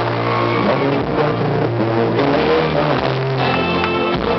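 Live rock band playing on stage, with guitar, bass, keyboards and drums, heard from within the audience.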